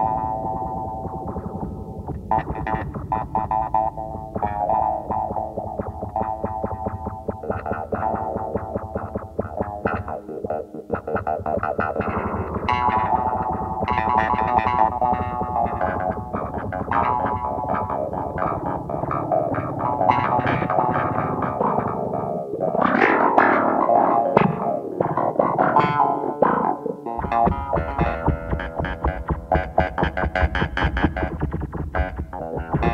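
Instrumental music led by an electric guitar run through effects, over a bass line. The low end drops away for a few seconds past the middle and returns near the end.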